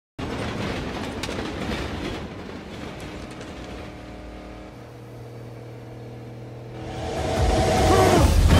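Car engine and road noise from a film soundtrack, heard from inside the cabin: a rumbling drive that settles into a steady engine note about halfway through, then grows louder near the end.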